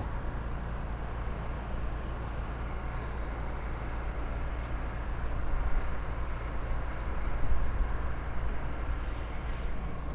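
Steady outdoor rumble of vehicle noise, swelling a little about halfway through.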